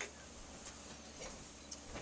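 Quiet room with a few faint clicks or ticks, spaced roughly half a second apart.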